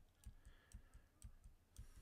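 Near silence with faint, quick computer clicks, about four a second, made while nudging an editing slider in small steps.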